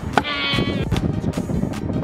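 Background music with a steady beat. A moment in, a voice holds one wavering note for about half a second.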